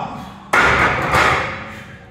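A heavily loaded Olympic barbell racked onto the steel uprights of a bench press: two loud metal clanks, about half a second and just over a second in, with the plates rattling as it settles.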